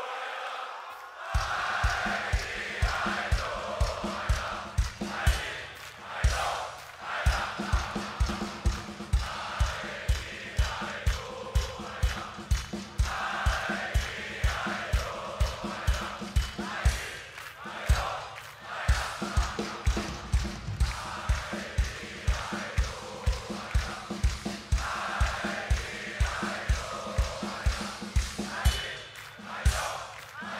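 Large festival crowd singing along in unison over a steady kick drum beat that starts about a second in.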